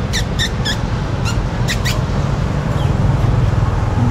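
Small caged parakeets (budgerigars) giving a quick run of short, high chirps, most of them in the first two seconds, over a steady low rumble of street traffic.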